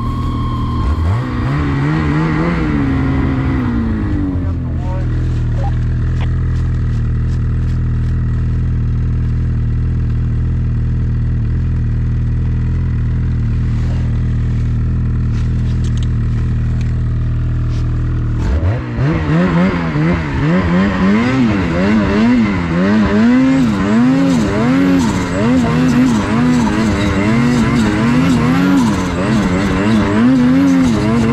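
2023 Ski-Doo Gen 5 snowmobile's turbocharged two-stroke engine winding down over the first few seconds, then idling steadily. About eighteen seconds in it revs up and runs with its pitch rising and falling quickly as the throttle is worked.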